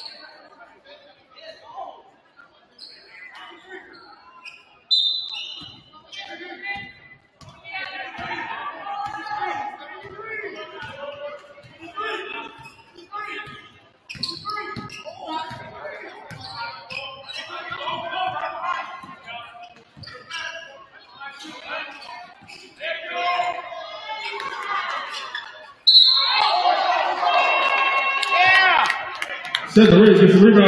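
A basketball bouncing on a hardwood gym floor during live play, mixed with the voices of players and spectators in the large hall. The voices grow louder about four seconds before the end.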